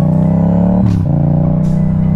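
Motorcycle engine pulling under acceleration, its pitch climbing, then dropping sharply at an upshift about a second in before it climbs again.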